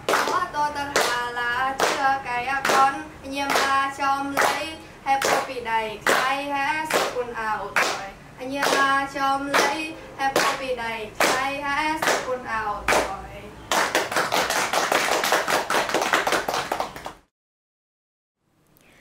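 Girls singing a folk song of their ethnic-minority people while clapping a steady beat, about two claps a second. Near the end the song stops and they break into fast applause, which cuts off suddenly.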